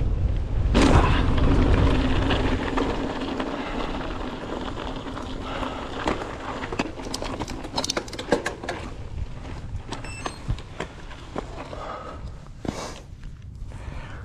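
Mountain bike riding fast down a dirt and gravel track: wind on the microphone and tyres rolling over loose stones, with a hard thump about a second in as the bike lands a jump. A run of sharp rattles and clicks from gravel and the bike's chain and frame comes in the middle.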